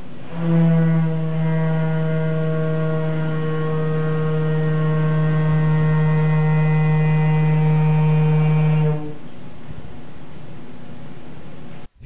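Organ pipe blown with sulfur hexafluoride from a balloon, sounding one steady low note of about 145 Hz with many overtones, held for about eight and a half seconds before stopping. The heavy gas drops the pipe's pitch well below its 318 Hz note in air.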